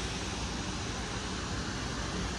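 Steady outdoor background noise, an even low rumble and hiss with no distinct events.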